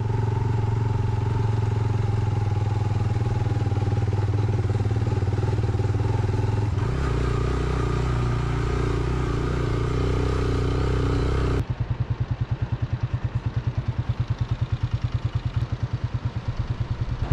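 Motorcycle engine running steadily on the move, its pitch shifting about seven seconds in. About twelve seconds in, the sound changes abruptly to a low, rapid pulsing of about five beats a second.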